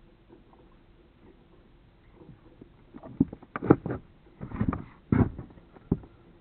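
Irregular rustling with several dull knocks, starting about three seconds in and coming in uneven bursts until near the end.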